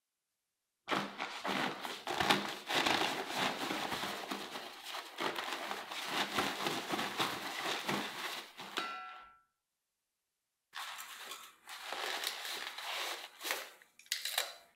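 A stiff, frozen denim sack packed with solid dry ice crinkling and crunching as it is handled and taken off the CO2 tank valve. The sound comes in two stretches of rapid crackles with a pause of about a second and a half between them.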